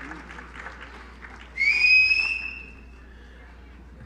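Audience clapping for a graduate, then about a second and a half in one loud, shrill whistle, rising slightly in pitch and held for over a second; the clapping thins out after it.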